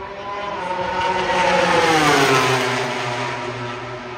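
A MotoGP bike's 1000 cc four-stroke engine passing at full speed on the main straight. It grows loud to a peak about halfway through, and its pitch falls steadily as it goes by and fades.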